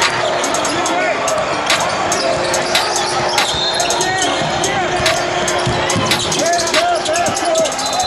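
Basketball bouncing repeatedly on a hardwood court as a player dribbles, over the chatter of players and spectators in a large gym.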